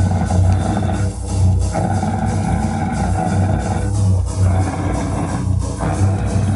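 Live band music: electric guitar and bass playing loud, sustained chords, with a few short breaks where the chords change.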